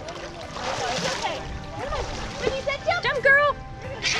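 Excited voices and squeals of people playing in a swimming pool, with water splashing as a toddler in arm floaties jumps off the edge and is caught.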